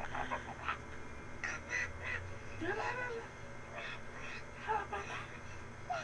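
A baby's short babbling and squealing sounds, coming in separate bursts with pauses between, one of them gliding up and back down about halfway through.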